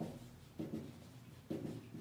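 Marker pen writing on a whiteboard: several short, faint strokes.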